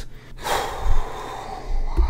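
A man's long breath in, close to the microphone, lasting about a second: a soft hiss with no voice in it.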